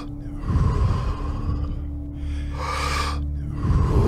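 Deep, full breaths in and out of Wim Hof-style power breathing, about one breath every two seconds, over background music with a steady low drone.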